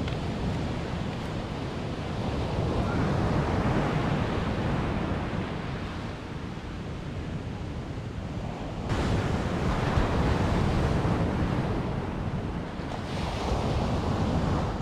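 Sea surf breaking on a sandy beach, a steady wash that swells about three seconds in and again about nine seconds in, with wind buffeting the microphone.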